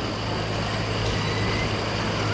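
Steady low mechanical hum, like a vehicle or machine running, under an even wash of outdoor noise.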